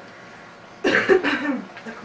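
A person coughs once, loudly and abruptly, about a second in.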